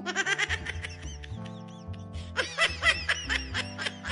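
Children laughing in quick, high-pitched bursts, loudest in the first second and again about halfway through, over background music with a steady low bass line.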